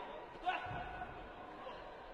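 Sports-hall ambience from a taekwondo bout: a short shout rings out about half a second in over the murmur of the hall, with a dull thud of footwork or a kick.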